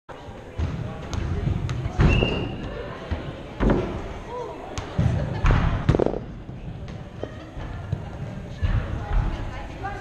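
Indoor soccer in a large turf arena: a ball thumps several times against feet and the boards, with players and spectators shouting in the echoing hall.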